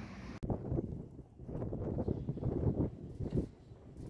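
Wind buffeting an outdoor microphone in irregular low rumbling gusts, after a brief drop-out about half a second in.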